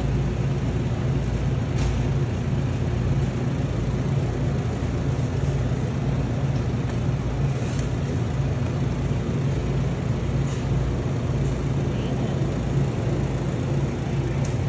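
Steady low hum of a refrigerated meat display case, its compressor and fans running, with a few faint light ticks.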